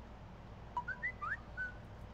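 A quick run of five or six short, high whistle-like chirps, some sliding upward in pitch, lasting about a second.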